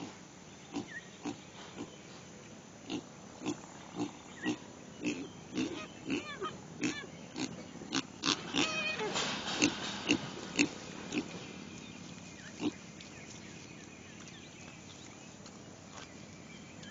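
An animal grunting in short, sharp pulses, about two a second. The grunts come faster and louder a little past the middle, then thin out and stop.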